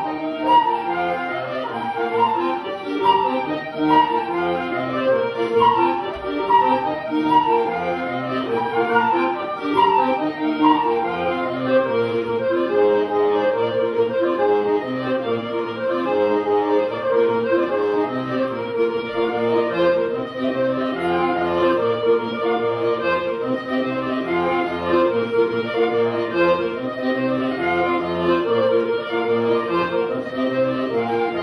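Celtic folk ensemble of transverse flute, gaitas (bagpipes) and accordion playing a brisk instrumental tune, with a fast-running melody over steady held notes.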